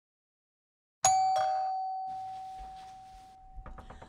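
A doorbell chime strikes twice in quick succession about a second in. The first tone rings on and slowly fades over a couple of seconds. A few light clicks follow near the end.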